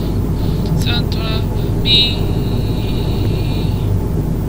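Steady low drone of an airliner cabin in cruise, from the jet engines and the airflow. Over it a voice sings briefly about a second in, then holds one long note from about two seconds in until near the end.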